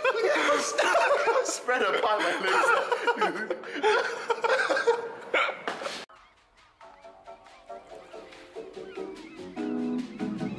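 A man laughing and giggling, mixed with a little unclear talk, for about six seconds. Then the sound cuts off suddenly and quiet background music starts, growing louder near the end.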